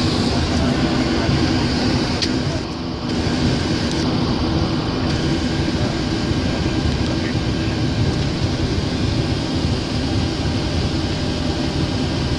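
Steady rumble inside a Boeing 737 cockpit as the airliner taxis on its jet engines, with a steady low hum running through it.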